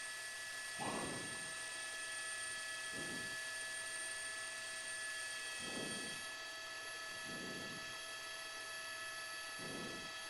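Faint steady electrical hum and hiss with several fixed high whining tones in the broadcast audio, broken by a few faint short sounds about every two seconds.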